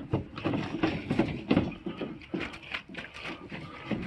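A drink-dispenser jug of gasoline and water being shaken and rocked on an ornate metal table. It gives an irregular run of sharp knocks and rattles.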